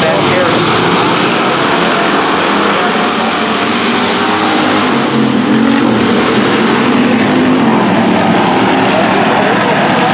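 Hobby stock race cars' engines running hard on a dirt oval, a loud, steady racket, with the engine note swelling and bending up and down as cars pass close by mid-way through.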